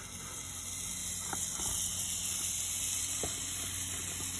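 Pizza sizzling in a hot skillet fresh off the campfire: a steady high hiss, with a few faint knocks as the covering pot and burning wood are handled.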